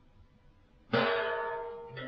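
A Chinese chau gong sounds once about a second in: a sudden strike that rings with many overtones and slowly fades.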